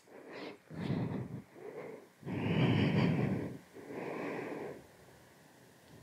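A woman's audible, heavy breathing picked up close on a headset microphone during a vinyasa flow: a run of about five breaths, the longest and loudest about two and a half seconds in. It dies away shortly before the end.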